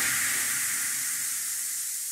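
A hissing noise wash in the backing electronic dance track, like a white-noise sweep or cymbal tail, fading steadily after the beat and bass drop away.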